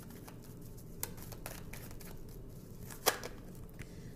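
Tarot cards being handled and drawn from the deck: a few soft taps, and one sharper click about three seconds in.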